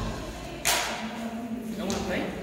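Two sharp knocks in a large hall, a louder one about two-thirds of a second in and a smaller one just before the end, over faint background voices.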